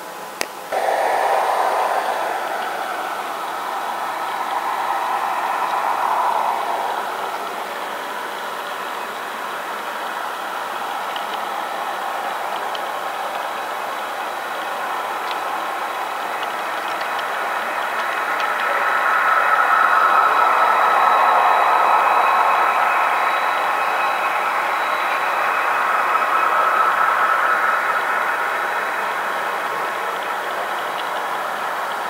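Model train rolling along the layout track: a steady running noise of wheels on rail and locomotive motors. It starts abruptly just under a second in and swells louder as the Santa Fe intermodal train passes close by.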